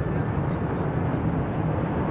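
Steady low rumble from a fireworks display as its last bursts die away, with a murmur of onlooking voices over it.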